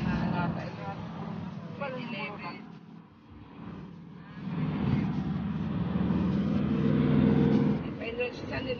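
Engine and road noise heard from inside a moving car, with people talking in the first couple of seconds. About halfway through, a louder steady engine drone builds and holds until just before the end.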